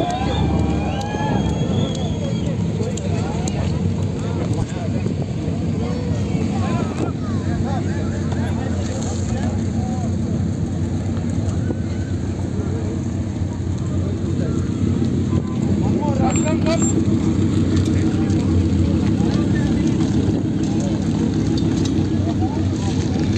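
Lamborghini Huracán's V10 engine idling at the start line, a low steady rumble that gets louder about fifteen seconds in, with people's voices over it.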